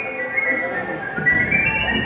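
Recorded music playing for a children's stage dance: a melody that steps upward in the second half, with the low end growing fuller a little over a second in.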